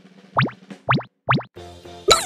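Cartoon 'bloop' pop sound effects: three quick upward-sweeping pops about half a second apart. Near the end, background music with a steady beat comes in.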